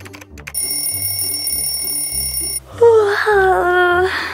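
An electronic alarm rings in one steady high tone for about two seconds and stops abruptly. It is followed by a long drawn-out voice that falls in pitch as the sleeper wakes.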